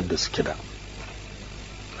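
A man's voice reading aloud in Hausa trails off about half a second in, followed by a pause holding only a steady low hum and faint hiss in the recording's background.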